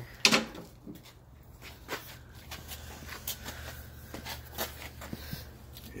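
Scattered light knocks and clicks of things being handled, about one every half second to a second, over a faint steady low hum.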